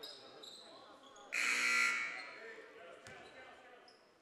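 A gymnasium buzzer sounds once, briefly, about a second in, and echoes in the gym.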